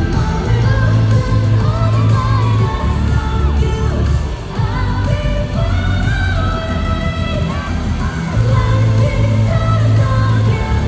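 K-pop song: singing over a heavy, steady bass beat.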